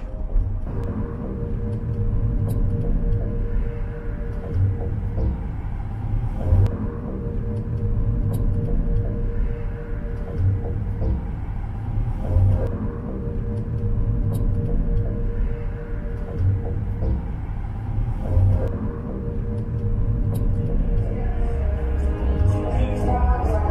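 Steady low rumble of wind and road noise in a moving open-top car. Music plays over it, its beat and held chords repeating about every two seconds.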